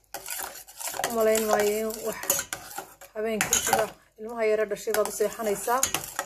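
Slotted metal spoon stirring and scraping around a stainless-steel saucepan of hot turmeric milk, clinking against the pot. Between the clinks come several drawn-out squeaks.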